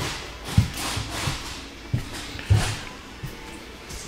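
A few heavy footsteps thudding on the floor of a travel trailer as someone walks through it, over a steady low hiss.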